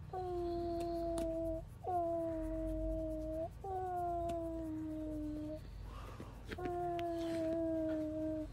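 French bulldog making four long, drawn-out whining moans, each held for a second or two and falling slightly in pitch, with short breaks between them.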